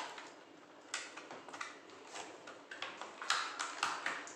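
Clear plastic takeaway container crackling and clicking as it is handled and its lid is worked open. The clicks are sharp and irregular, several in all, and come closer together near the end.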